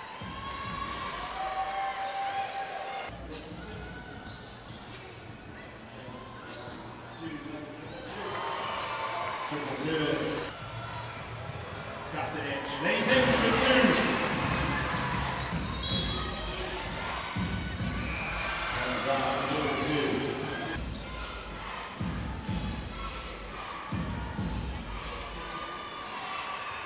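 Game sound from an indoor basketball court: the ball bouncing on the hardwood amid voices and crowd noise, which swells loudest about halfway through.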